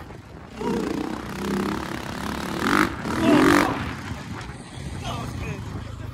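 Dirt bike engine running under way, with wind rushing over the microphone. Wordless shouts from a rider ride over it, loudest about three seconds in.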